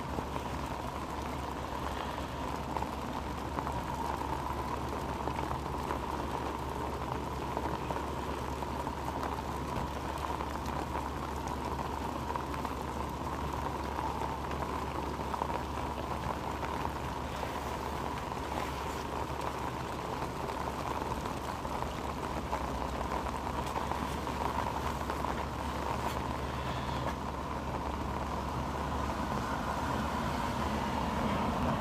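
Heavy rain falling steadily, a dense unbroken hiss of drops with a steady low hum underneath.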